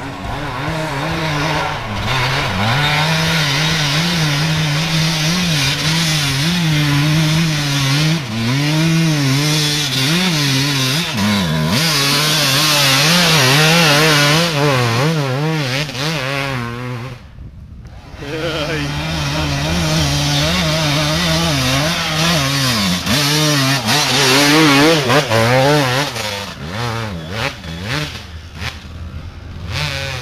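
Suzuki RM250 two-stroke dirt bike engine revving hard, its pitch rising and falling with the throttle. It drops away briefly a little past halfway, then picks up again.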